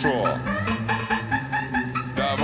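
Late-1990s eurodance mix playing: a steady dance beat with repeating synth notes, and a sampled sound that glides downward in pitch right at the start.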